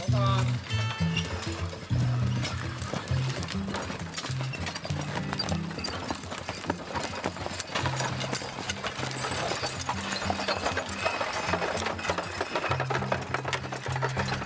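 Hooves of a team of eight Clydesdale and Australian Draught horses clip-clopping as they pull a wagon, many overlapping steps. Background music with sustained low notes plays alongside.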